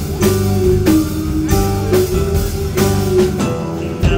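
Live alternative rock band playing an instrumental passage: a Casio Privia digital piano's notes over bass guitar and a drum kit keeping a steady beat.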